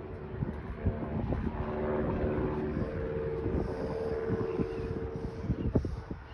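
A small propeller plane towing a banner overhead, its engine droning steadily. The drone comes through most strongly in the second half.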